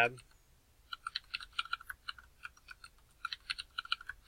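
Computer keyboard typing: two quick runs of keystrokes, a password typed and then typed again to confirm it.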